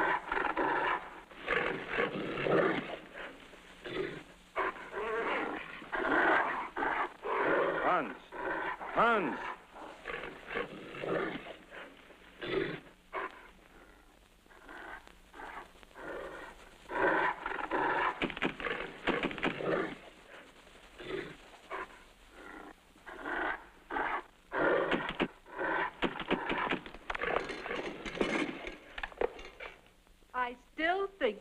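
Dog-like growling and barking from a creature in irregular bursts, with pitch that bends up and down and a couple of quieter pauses.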